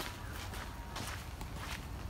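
Footsteps walking at a steady pace on a sandy dirt path, each step a short scuff, several a second.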